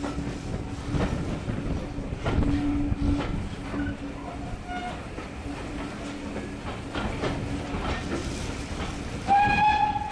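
Passenger coach rolling slowly over the track, its wheels clicking over rail joints and pointwork, with a low steady hum that comes and goes. A short, loud pitched whistle sounds near the end.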